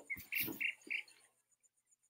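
Nature ambience from a played-back video soundtrack: three short bird chirps in quick succession in the first second over a faint, fast insect pulsing, with a few soft knocks. Near silence for the last second.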